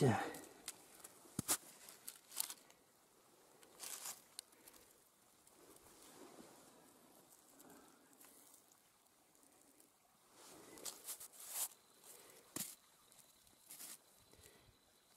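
Rocks being picked up and handled by hand in leaf litter and granular snow: a handful of sharp stony clicks spread out, with soft rustling of dry leaves, pine needles and snow between them.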